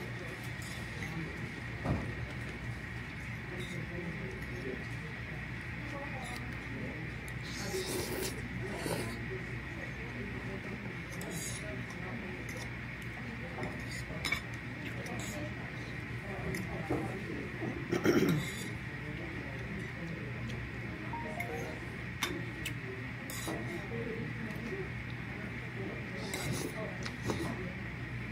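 A metal fork clinking and scraping on a ceramic plate as noodles are twirled and eaten: scattered light clinks, the loudest about 18 seconds in, over a steady room hum.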